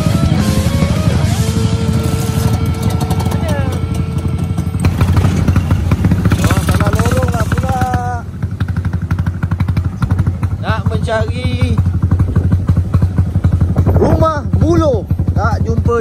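Background music with a stepping melody for the first several seconds, then, after a cut, small motorcycles running in a convoy with people's voices calling out over the engines.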